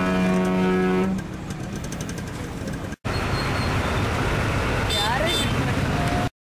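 A vehicle horn sounds one steady honk for about a second, over the running engines and general noise of slow, congested road traffic. The traffic noise carries on after a cut, with a few short rising chirps near the end.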